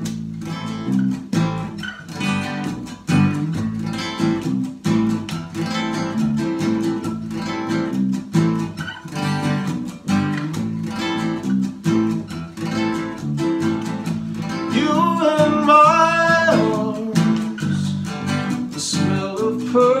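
Acoustic guitar strummed in a steady rhythm with an electric bass guitar playing underneath: the instrumental intro of a slow song. Singing comes in near the end.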